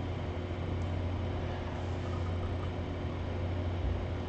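Steady low hum with a faint, even hiss: background room tone.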